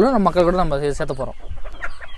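Free-range native country hens clucking, short scattered calls that stand out after a man's voice stops about a second in.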